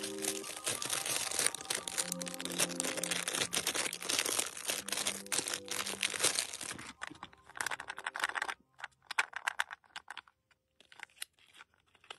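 Thin plastic packaging bags crinkling as they are handled. The crinkling is dense for about seven seconds, then comes in short bursts with quiet gaps between. Soft music plays underneath during the first half.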